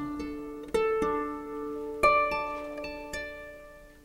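Solo harp being plucked: single notes and chords that ring out and slowly fade, with fresh notes struck several times, notably about three-quarters of a second in and at two seconds.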